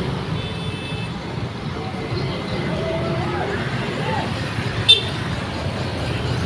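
Street traffic: small motorcycle engines running steadily as scooters pass close by, with people's voices in the background. A brief sharp click or beep sounds about five seconds in.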